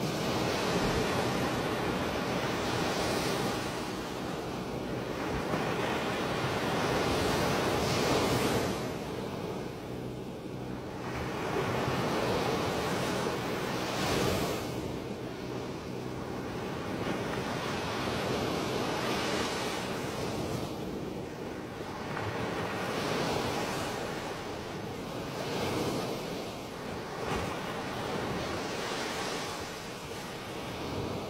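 Surging waves and turbulent floodwater rushing and breaking in a continuous wash of noise that swells and eases every few seconds.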